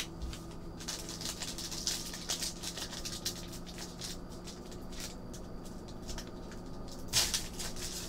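Foil trading-card pack wrapper crinkling as it is handled, a run of small crackles with a louder burst of crackling near the end.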